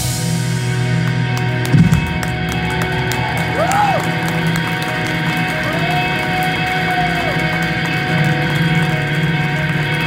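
A live rock band's closing drone: electric guitars left ringing through their amps, giving many held feedback tones with slow pitch swoops, after a last drum hit about two seconds in.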